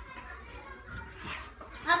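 Faint background chatter of several young girls' voices over a low room hum, with one girl starting to talk close to the microphone right at the end.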